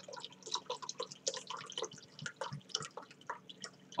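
Red-wine sangria poured from a bottle into a drinking glass: a run of irregular glugs and splashes as the glass fills.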